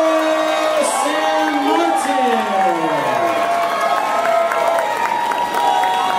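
Ring announcer drawing out the winner's name over the arena public-address system in long held, gliding notes, with the crowd cheering underneath.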